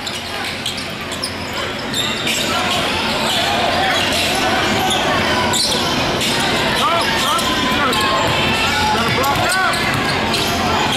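Basketball being dribbled on a hardwood gym floor, with sneakers squeaking briefly several times in the second half, over spectators talking and calling out. The hall echoes, and the sound gets a little louder about two seconds in.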